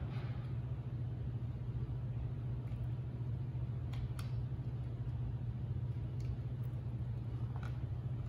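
Room tone: a steady low hum with a few faint ticks, most likely the book's pages being handled.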